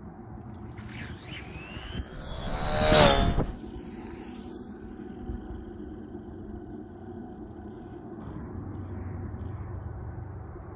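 Electric RC drag car making a high-speed pass: a whine rises over about two seconds, peaks loudest about three seconds in with a burst of noise, and drops in pitch as it goes by. A steady low rumble stays underneath.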